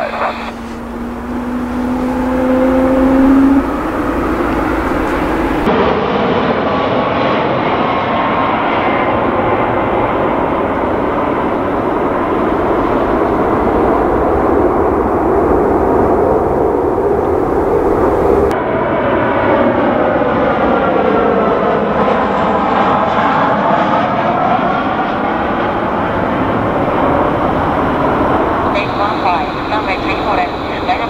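Airliner jet engines in several spliced clips. First comes a rising whine from an approaching aircraft. Then the Boeing 747-400 freighter's four engines run at take-off power as a steady roar, followed by a jet passing with a sweeping, phasing rush.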